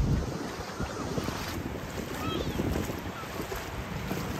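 Wind buffeting the microphone over steady beach surf, with a few faint distant voices.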